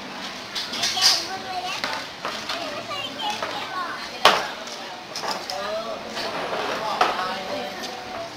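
Steady chatter of children's voices, with a sharp knock about four seconds in and a few lighter knocks, from a young orangutan handling a white plastic chair on a tiled floor.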